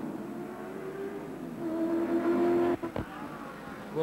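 Touring car engine note from the racing on the track, heard through an old TV broadcast's sound. The note holds a steady pitch, grows louder about halfway through, then cuts off abruptly with a click about three seconds in.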